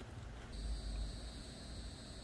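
Faint outdoor background with a low rumble; about half a second in, a steady high-pitched whine starts and holds.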